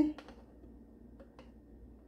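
A metal spoon clicking faintly against a glass bowl a few times, in pairs, as sauce is scraped out, over low room tone.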